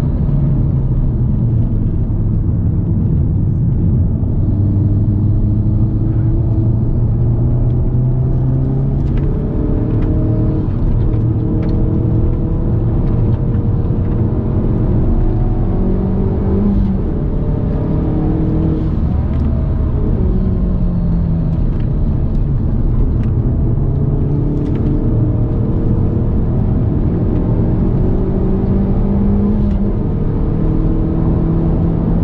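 2019 Hyundai i30 N's turbocharged four-cylinder engine, fitted with a cold air intake, heard from inside the cabin at racing speed. It rises in pitch under acceleration and drops back at the gear changes, several times over.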